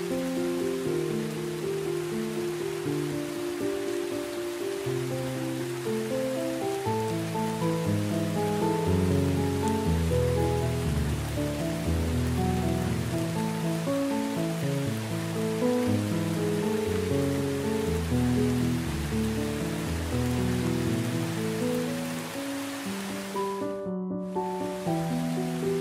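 Steady heavy rain with a gentle instrumental melody of slow, sustained notes over it, a lower line of notes joining a few seconds in. The rain noise drops out briefly just before the end.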